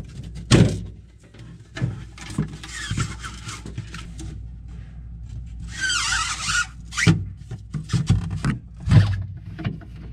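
A plastic refrigerator evaporator fan housing being handled and pushed into place against the freezer's plastic liner: a series of sharp knocks and clicks, the loudest about half a second in, about seven seconds in and about nine seconds in, with two stretches of scraping and rubbing around three and six seconds in.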